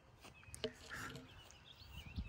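Faint outdoor ambience with a few soft bird chirps.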